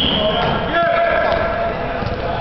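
A referee's whistle blown once in a short steady note for the kick-off, followed by a futsal ball being kicked and bouncing on the hard hall floor, with players' voices.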